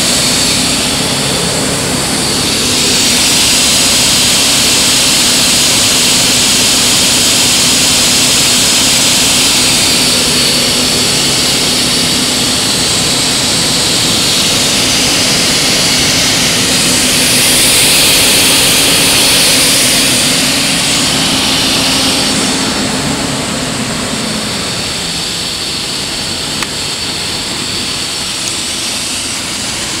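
High-pressure water jet from a KEG torpedo sewer-cleaning nozzle, running at about 2,000 PSI, spraying through a steel test pipe with a loud steady hiss. Underneath is a low steady hum from the combination sewer cleaner's water pump. The hum fades out about three-quarters of the way through, and the hiss eases a little.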